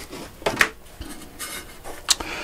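Thin plywood pieces being handled at a workbench, wood rubbing and scraping against wood, with a sharp knock about half a second in.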